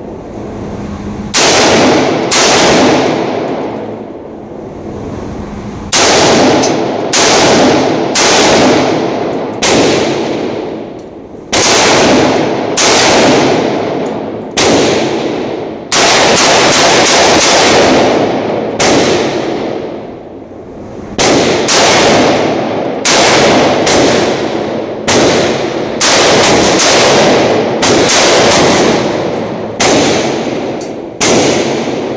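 Sig Sauer AR-style semi-automatic rifle firing about two dozen shots, mostly a second or so apart with short pauses, and a fast string of shots about halfway through. Each shot echoes off the concrete walls of the indoor range.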